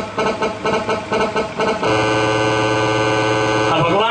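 Harmonium playing a quick run of short repeated notes, about five a second, then holding one steady reedy chord for about two seconds, which cuts off just before the end.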